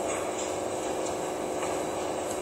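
Steady hum and hiss of the inside of a pig barn, with no distinct events, heard through a television's speaker.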